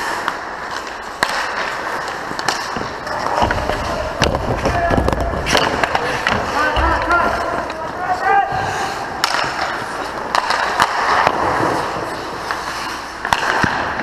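Ice hockey play heard from the goal net: skate blades scraping and carving on the ice, with sharp clacks of sticks and puck throughout and players calling out. A low rumble runs for a few seconds in the middle.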